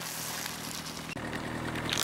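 Car engine idling with a steady low hum. Near the end come the first crackles of a tire pressing onto a plastic jam cup.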